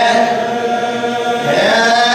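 A man's voice chanting a na'i, an Arabic Shia lament, in one long held wavering note that dips and then rises again about one and a half seconds in.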